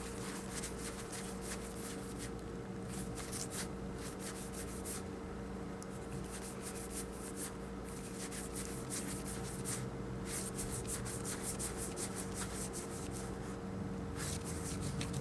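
Theory11 Union paper playing cards sliding and rubbing against each other as they are spread between the hands, with many light, quick ticks and a scratchy rustle throughout. A steady low hum runs underneath.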